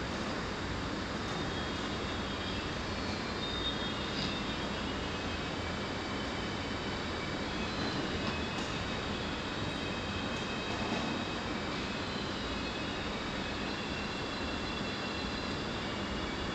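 Steady background noise of the room and the open microphone, a constant low rush and hiss with no voices, and a few faint high tones coming and going.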